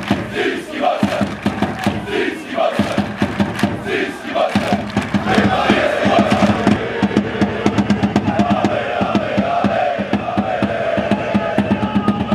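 Football supporters in a stadium stand chanting in unison over a fast, steady beat. For the first few seconds they shout a short phrase about once a second; from about halfway this becomes a continuous sung chant.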